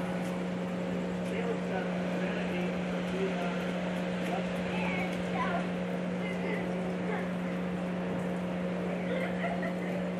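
Outdoor ambience with a steady low hum and faint, distant voices.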